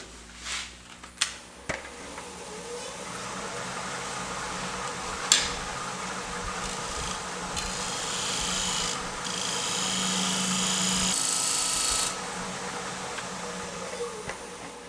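A traditional-grind bowl gouge cutting the outside of a spinning basswood bowl on a wood lathe, taking a clean-up cut over torn end grain. After a few light knocks in the first two seconds, the steady hiss of the cut builds, is loudest near the end, and stops about two seconds before the end, with one sharp tick about five seconds in.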